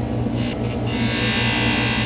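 Electric bench polishing lathe running with a steady low hum, and the hiss of steel being polished against the spinning compound-loaded wheel. The hiss eases off briefly twice, as the piece comes away from the wheel.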